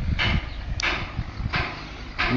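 Wind rumbling on the microphone of a handheld phone, with three short rustles of handling noise.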